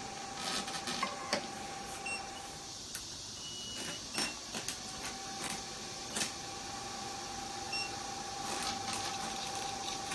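980 nm diode laser machine humming with a steady whine. The whine cuts out about three seconds in and comes back about two seconds later as the machine restarts. Short electronic beeps and scattered clicks from the handpiece and controls are heard over it.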